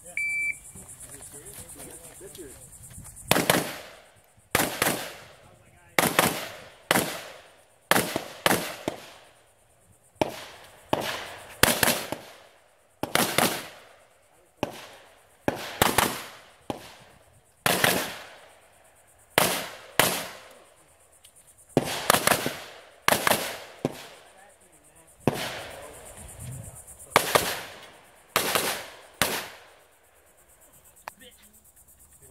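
A shot timer beeps once, then about three seconds later an AR-15 rifle begins firing: roughly thirty shots in singles and quick pairs, with short pauses between strings as the shooter moves between positions. Each shot is followed by a brief echo.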